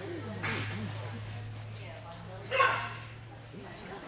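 A small dog barks sharply, most strongly about two and a half seconds in, over a steady low hum.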